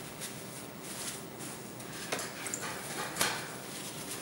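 Faint, irregular rustles and scrapes from oil-painting work: a brush being worked in paint and then wiped clean in tissue, with a couple of slightly louder strokes about two and three seconds in.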